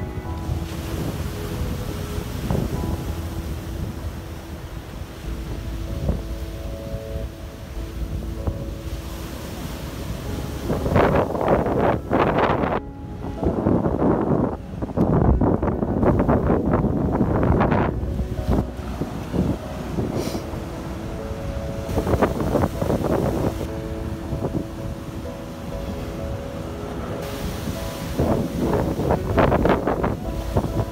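Surf breaking and washing over a rock shelf, with wind buffeting the microphone; the water noise swells into several louder surges, the biggest about halfway through.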